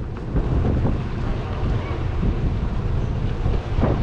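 Wind buffeting the microphone: an uneven low rumble that rises and falls.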